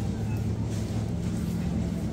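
Supermarket background noise: a steady low hum with faint, indistinct voices of shoppers.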